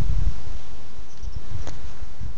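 Wind buffeting the camera microphone outdoors: an uneven low rumble that swells and fades, with a faint click near the end.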